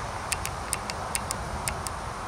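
Sharp, high ticks at irregular intervals, about five a second, over a steady background hiss.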